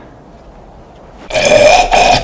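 Faint background hiss, then about a second and a half in a loud, rough vocal blast from a man, lasting just under a second.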